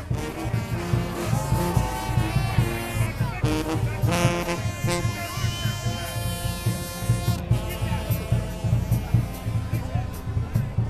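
Brass band playing a lively marching tune in the street: held horn notes over a steady drum beat, with crowd voices underneath.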